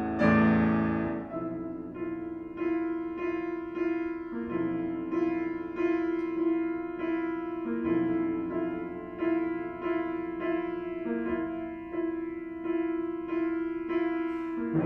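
Concert music for euphonium and grand piano: a loud, full passage in the first second, then a quieter stretch led by the piano, repeating a figure at a little under two notes a second.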